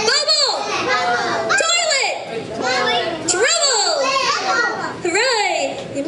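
A group of young children calling out together in high voices, several times in a row. They are saying the magic word "bubbles" on cue.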